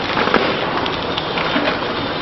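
Biscuit packing machine running with a dense, steady clatter of many small clicks, one sharper click about a third of a second in.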